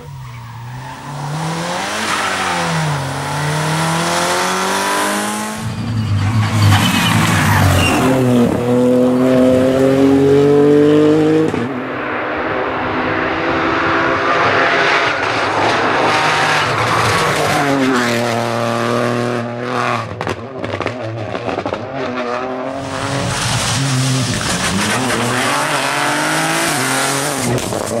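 Several rally cars pass in turn at full speed. Each engine revs high and drops back through quick gear changes, and the sound shifts abruptly a few times as one car gives way to the next.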